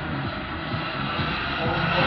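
Twin JetCat P80 model jet turbines of a large RC Bombardier CRJ 200 in flight: a steady rushing jet noise as the model passes overhead.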